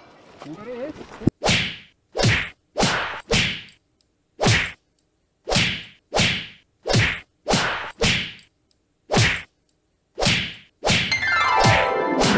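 A dozen or so short swish sound effects, one every half second to a second, each sharp at the start and quickly dying away. Music comes in near the end.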